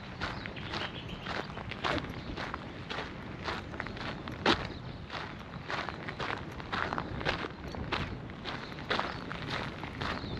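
Footsteps of a person walking on a dirt path, about two steps a second, with one step louder about halfway through.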